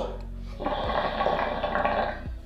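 Water bubbling and gurgling in a hookah's glass base as smoke is drawn hard through the hose, pulling the stale smoke out. The bubbling starts about half a second in and keeps up steadily.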